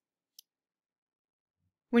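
A single short computer-mouse click about half a second in, amid near silence.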